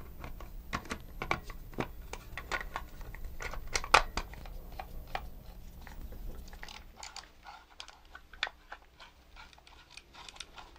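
Hard plastic toy-robot body parts clicking and knocking as they are handled and snapped back together, with one sharp knock about four seconds in. The clicks thin out in the last few seconds.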